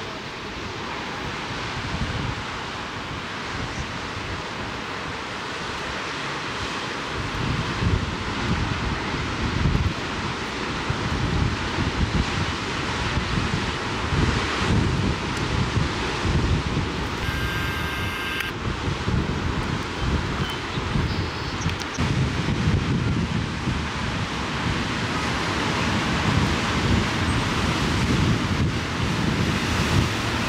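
Wind buffeting the microphone, heavier from about seven seconds in, over the steady wash of ocean surf breaking on rocks.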